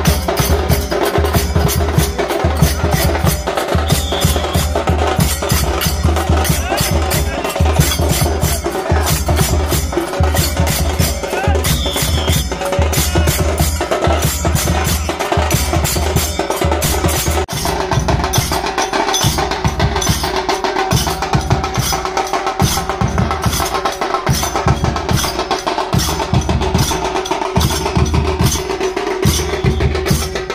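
Loud, fast percussion-led festive music: drums and sharp wooden-sounding strikes keeping a steady, driving rhythm.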